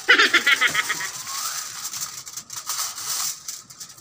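Aluminium foil crinkling and rattling as it is pulled off the roll and folded around a whole chicken. A loud rapid crackle comes first, then softer scattered crinkles and ticks.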